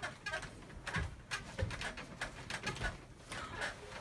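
Creaks, light knocks and bedding rustle from a wooden bunk bed as someone gets off the top bunk and climbs down its ladder, a scatter of short irregular sounds.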